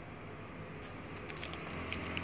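Quiet room tone with a steady low hum, and a few faint light clicks in the second half.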